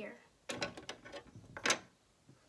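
Small plastic toy gate pieces being set down and fitted onto a plastic playset: a quick run of light clicks and taps, with a louder click near the end.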